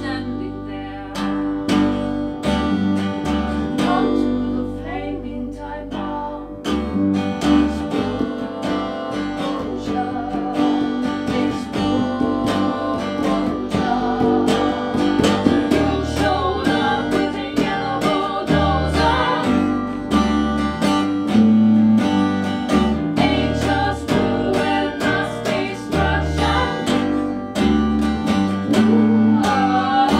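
A song played live by a duo: acoustic guitar strumming over a deep, plucked electric bass line, with singing over the top.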